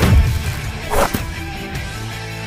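Fight-scene punch sound effects: a swishing whoosh and smack right at the start and another about a second in, over background music.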